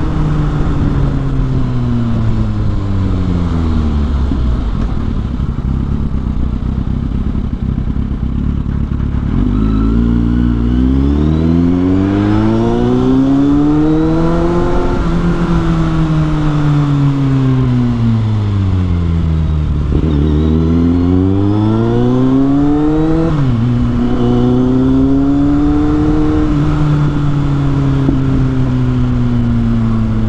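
Kawasaki Z800's inline-four engine through a Yoshimura slip-on exhaust while being ridden. The note falls as the bike rolls off, rises under acceleration, falls away again, then climbs once more before a sudden drop in pitch and a steadier stretch.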